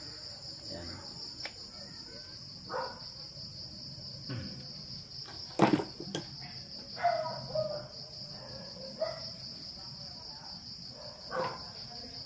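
Crickets chirping in a steady high-pitched chorus, with a few sharp knocks and clicks of tools and parts handled on a workbench. The loudest knock comes about five and a half seconds in.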